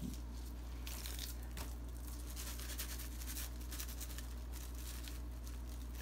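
Quiet rustling and scraping of a gloved hand rubbing a coarse salt-and-pepper rub over a raw brisket, over a steady low hum.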